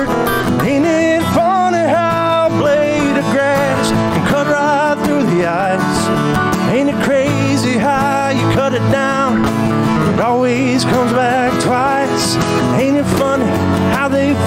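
A man singing a slow country song with acoustic guitar accompaniment, the vocal line held and wavering over steady strummed chords.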